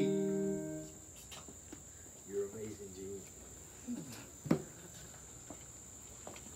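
The final held chord of the music fades out within the first second. Then a steady high-pitched chirring of insects carries on in the background, with a few faint knocks and a short low murmur.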